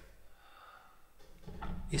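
A low bowed double-bass note dies away at the start, then near quiet. Near the end a man draws an audible breath and starts to speak.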